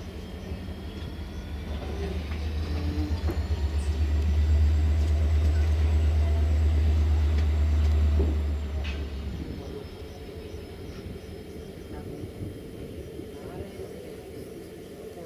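A diesel locomotive's engine under throttle: a deep rumble that swells over the first few seconds, holds loud, then drops away at about nine seconds in.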